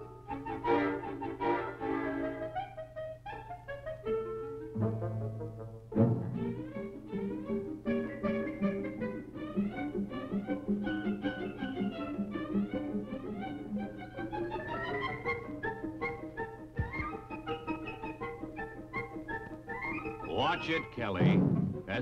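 Orchestral background music led by strings, with changing melodic phrases and a swooping glide in pitch near the end, over a steady low hum from the old film soundtrack.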